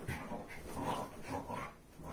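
A pet dog making a series of short, soft sounds.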